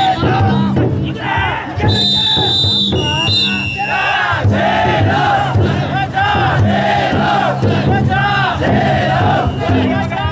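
Dozens of chousa drum-float bearers shouting rhythmic chants in unison, many voices rising and falling together. About two seconds in a shrill steady tone is held for about a second, likely a whistle.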